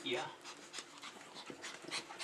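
A small dog and a puppy play-fighting: panting, with short scuffling and clicking noises as they tussle.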